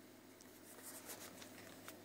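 Near silence with faint rustling and a few light ticks of handling, bunched in the second half.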